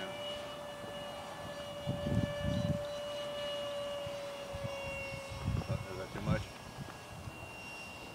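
Electric ducted fan of a foam RC F-18 Hornet jet flying overhead at a distance: a steady, thin whine that holds one pitch and drops away a little past halfway. Low gusts of wind buffet the microphone about two seconds in.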